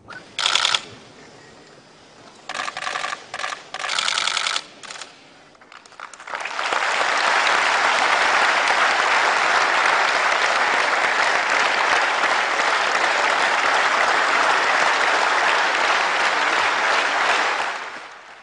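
A large audience applauding, a steady dense clapping that starts about six seconds in and runs for some twelve seconds before fading at the end. Before it come a few short, sharp bursts of sound.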